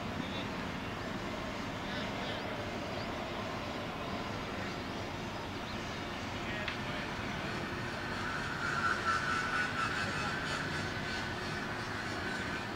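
Steady distant engine drone with faint voices across the field; a higher steady sound joins about eight seconds in.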